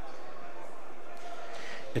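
Steady indoor sports-hall ambience with faint, indistinct background voices. A man's voice comes in close at the very end.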